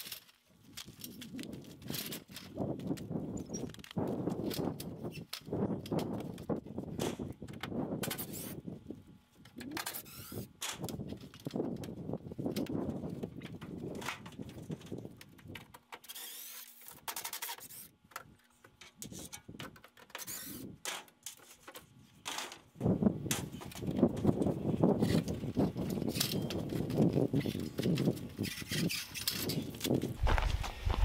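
Irregular knocking, clattering and scuffing of hands-on work on a scaffold and a roof edge, quieter in the middle and busier again near the end.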